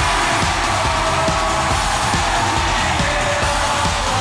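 Loud pop-rock music with a steady beat.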